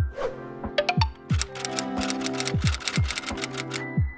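Background music with a beat: held tones over deep thumps that drop in pitch, with a run of rapid crisp ticks through the middle.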